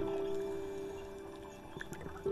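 Soft, slow piano music: a single note struck at the start, slowly dying away.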